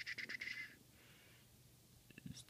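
Plastic arrow key on a TI-84 Plus graphing calculator pressed repeatedly to step the cursor along the graph: a fast run of small clicks with a faint rasp, dying out before the middle.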